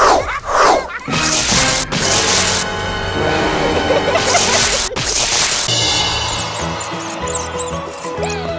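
Cartoon background music with magic sound effects: falling whooshes in the first second, then two bursts of crackling hiss. The second burst, about four and a half seconds in, is an electric zap of lightning.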